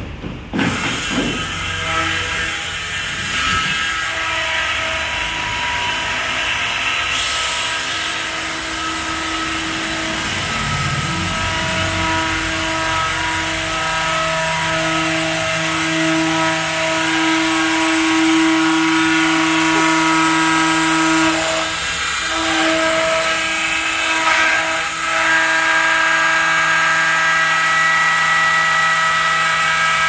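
Electric motor of a window-profile copy router running with a steady high whine as it machines a white window-frame profile. The tone dips briefly twice in the second half.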